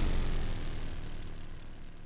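Fading tail of an electronic intro sting: a deep boom and whoosh dying away into a low rumble.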